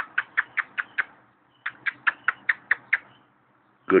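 A person making rapid kissing sounds with the lips to call puppies: two runs of short squeaky smacks, about six a second, the first in the opening second and the second from about one and a half to three seconds in.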